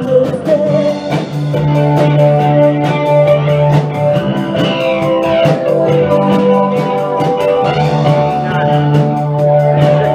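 A live rock band playing: electric guitar over a steady drum-kit beat, with held notes and some bending pitches in the middle.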